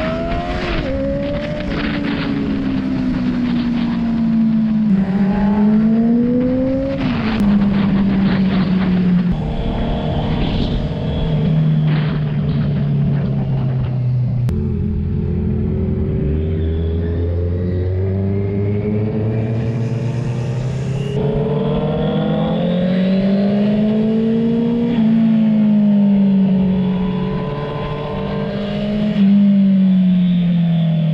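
Sportbike engines accelerating through the gears, their pitch climbing and dropping back at each shift several times over. About halfway through, the pitch settles low and nearly level for a few seconds as the bikes roll slowly, then climbs again.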